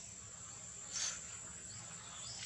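Steady, high-pitched drone of insects, with one short high squeak about a second in.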